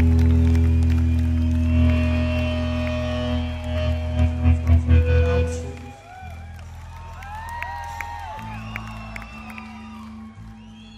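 Live rock band holding a final electric guitar chord, with a run of loud drum hits about four to five seconds in. The music stops about six seconds in, leaving a crowd cheering, whooping and whistling over a low steady hum.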